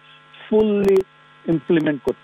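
A man speaking in short phrases with pauses, over a steady low electrical hum that carries on through the gaps.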